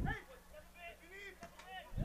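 Faint talking voices, with a louder voice trailing off just after the start.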